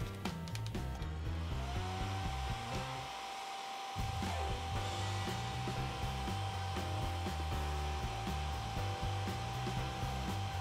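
Handheld hair dryer running steadily, blowing hot air onto a vinyl doll head to soften the plastic and melt the glue inside. Its motor whine rises and settles to a steady pitch about a second in.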